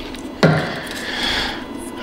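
A man's sigh: a short voiced start about half a second in, then a long breathy exhale that fades away, in exasperation at a wrongly pinned connector.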